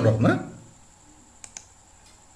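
Two quick computer mouse clicks in close succession, about one and a half seconds in.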